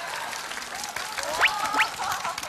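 Studio audience applauding, with two quick rising glides in pitch about one and a half seconds in.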